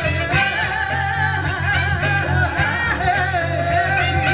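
Live band playing, with a woman singing lead in long, wavering held notes over a steady drum beat and heavy bass.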